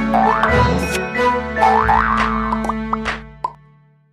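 A bright jingle for an animated logo, with rising sweep sound effects. It fades out over the last second and a half, with one short pop about three and a half seconds in.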